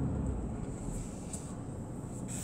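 Car engine idling, a low steady rumble.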